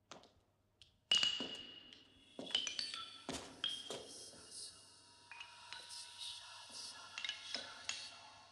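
A sudden loud ringing clink about a second in, followed by a run of overlapping clinking, chiming strikes that ring on and die away.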